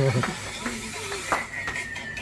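A voice calls "pump" and laughs. Then, near the end, a high held tone comes in, sliding slowly down in pitch.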